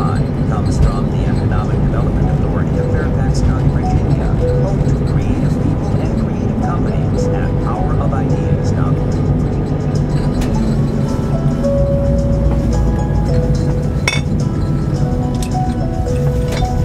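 Steady low road and engine rumble inside a moving car, with the car radio playing under it: voices or melody in the first half, music with held notes in the second half. A single sharp click comes a little before the end.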